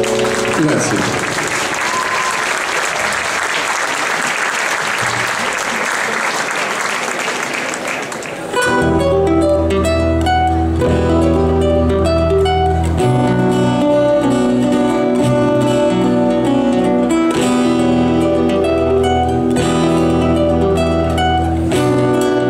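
Audience applauding for about eight seconds, then an abrupt start of acoustic guitars and a plucked double bass playing an instrumental passage.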